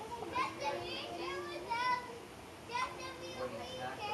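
Children's voices in the background, calling out and shouting in several short bursts while playing, with no clear words.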